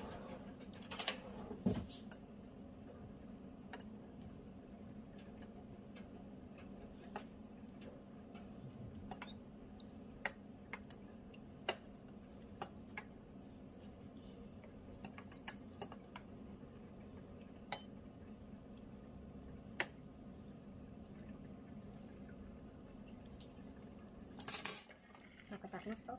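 A metal fork clinking now and then against a plate while sausages are laid around fried eggs, over a steady low hum. There is a louder clatter near the end.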